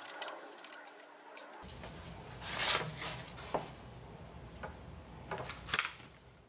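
Handling noise as corrugated plastic (Coroplast) sheets and a wooden 2x4 are moved and pressed into place, with rustles and a few sharp knocks, the loudest about halfway through.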